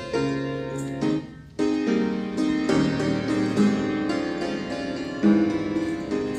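Keyboard playing a hymn tune in struck chords, with a brief gap about a second and a half in.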